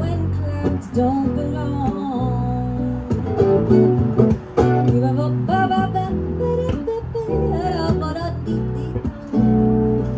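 Acoustic guitar strummed in a steady rhythm with an electric bass playing under it: a live instrumental passage between sung lines of a song.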